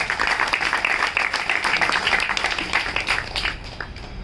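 Applause from an audience and performers, a dense patter of many hands clapping that dies away near the end.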